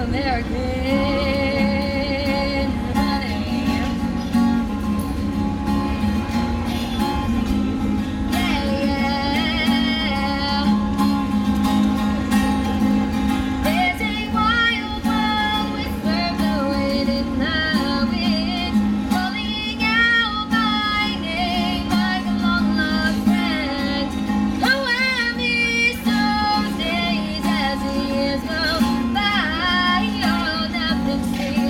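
A woman singing with vibrato in long held notes while strumming a steady accompaniment on an Ibanez acoustic guitar.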